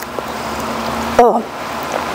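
A woman's short exclamation, "oh", about a second in, a reaction to the sour taste of a lemon slice she has just bitten, over a steady hiss of outdoor background noise.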